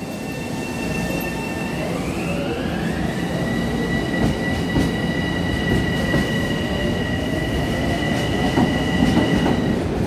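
Long Island Rail Road M7 electric multiple-unit train moving past at close range, a low rumble of wheels on rail under a two-tone electric whine. The whine rises in pitch about two seconds in as the train gathers speed, then holds steady.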